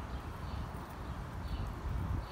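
Footsteps on pavement, about one step a second, over a steady low rumble on the microphone.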